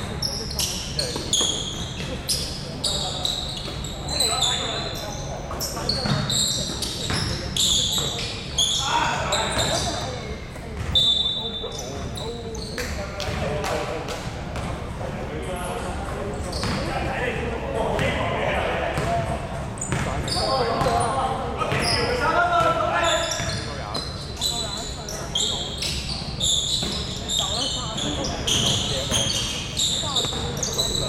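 Basketball game on a hardwood court in a large gym: the ball bounces repeatedly on the floor, sneakers squeak in short high chirps, and players' voices call out, all echoing in the hall.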